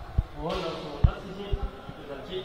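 Tibetan monastic debate: a standing debater calls out in a raised, rising voice and strikes the debate clap with its stamp, giving sharp thuds, the loudest about a second in and a quick double near the end.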